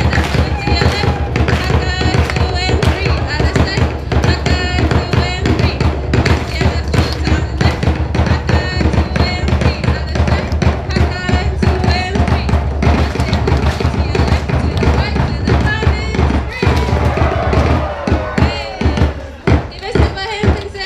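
A seated crowd clapping with cupped hands in a fast rhythm, over music and voices; the clapping thins to separate, spaced claps near the end.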